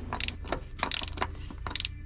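A 3/8-inch ratchet clicking in short, uneven runs as it tightens the oil filter housing cap through a cap-style oil filter wrench.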